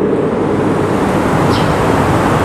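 Loud steady rushing noise with no voice, like hiss or a whoosh on the sermon's microphone line.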